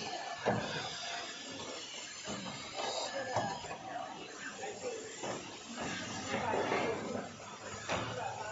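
Production-line noise: indistinct voices of people talking, with a few sharp clacks of machinery, one about half a second in and another a little over three seconds in.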